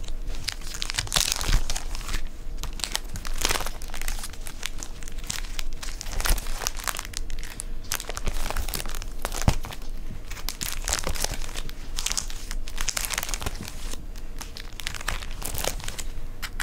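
Plastic sleeve pages in a ring binder crinkling and rustling as they are turned and handled by hand, with irregular crackles throughout.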